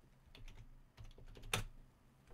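Faint clicking of a computer keyboard: a few light taps, with one sharper click about one and a half seconds in.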